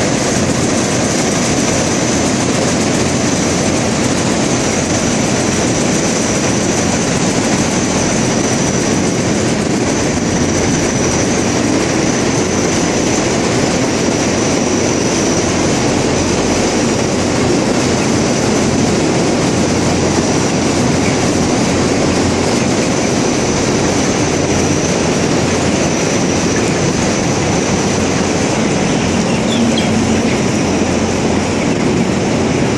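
Bank of large belt-driven exhaust fans in a tunnel-ventilated broiler house running steadily: a loud, even rush of moving air, with a faint high steady tone above it.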